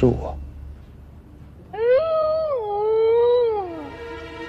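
A high-pitched voice drawn out into one long, wavering cry of about two seconds, which slides down in pitch at the end.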